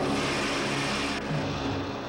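Monster-fight film soundtrack: creature sound effects over an orchestral score with low sustained tones. A loud hissing rush cuts off a little over a second in.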